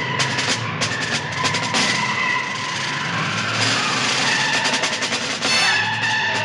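Orchestral action music with a driving, rapid snare drum pattern under held high notes from the strings and brass.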